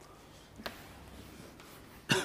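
Whiteboard eraser rubbing faintly across a whiteboard, with a single sharp click a little after half a second in.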